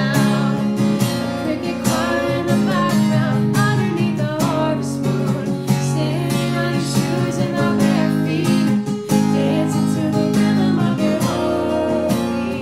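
Acoustic guitar strummed as song accompaniment.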